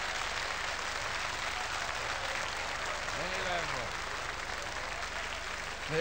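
Theatre audience applauding steadily, with one short voice rising and falling about three seconds in.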